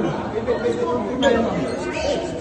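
Crowd chatter: several people talking over one another at once in a heated exchange, with no single voice clear.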